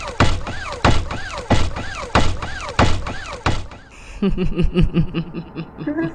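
Heavy mechanical footsteps from powered armor suits, RoboCop-style: a thud about every two-thirds of a second, each followed by a servo whine that rises and falls. About four seconds in, the steps give way to a faster, evenly spaced run of short pulses, about six a second.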